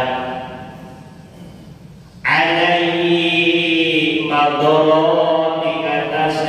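A man's voice chanting Arabic text from a book in long held notes, through a microphone. One phrase dies away with an echo over the first two seconds, then a new held phrase starts abruptly and steps to another pitch about four seconds in.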